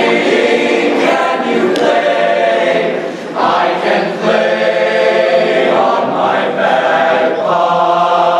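A young male choir singing in parts, with full sustained chords and a brief dip in the sound about three seconds in.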